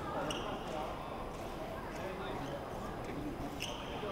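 Voices murmuring in a large sports hall, with fencers' footwork on the piste: shoes squeaking briefly about half a second in and again near the end, and light footfalls.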